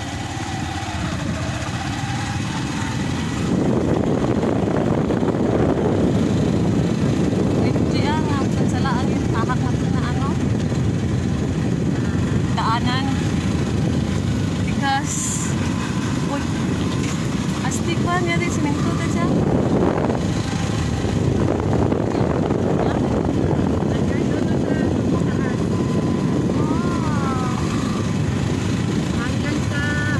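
Motorcycle running along a road with wind rushing over the microphone, getting louder about three and a half seconds in as it picks up speed.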